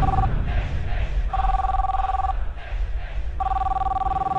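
Telephone ringing: a steady electronic two-tone ring about a second long, repeating with about a second's gap, over a low rumble.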